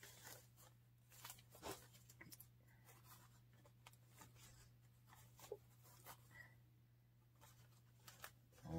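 Near silence with faint rustling and soft clicks of wired fabric ribbon being folded and twisted into loops on a wooden bow maker, over a low steady hum.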